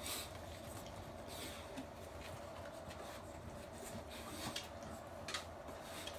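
Faint, scattered scratchy scuffs and rustles over a steady low hum, from a dog shifting about on a wooden floor.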